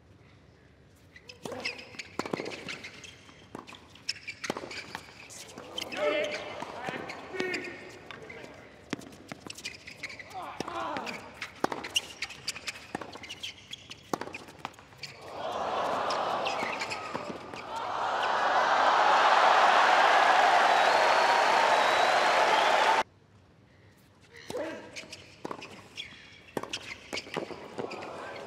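Tennis rally on a hard court: a string of racket strikes on the ball with shoe squeaks between. After the point a crowd cheers and applauds loudly for several seconds, cut off suddenly, and near the end the strikes of a new rally begin.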